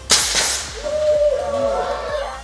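An F1 in Schools model car fired off by its CO2 cartridge: a sudden loud hiss that fades over about half a second. Children's voices then shout from just under a second in.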